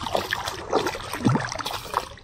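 A hooked spotted seatrout thrashing at the surface beside the boat, throwing up a string of irregular splashes.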